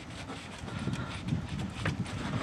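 Faint irregular creaking and knocking from a Chevrolet TrailBlazer's rear upper control arm being levered back and forth, with a sharp click near the end. The play in the arm comes from its worn, damaged rubber bushing.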